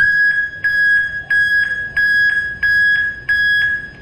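A Peterson 12-volt surface-mount backup alarm, rated about 112 dB, beeping: a loud, high-pitched beep that repeats evenly and fades near the end.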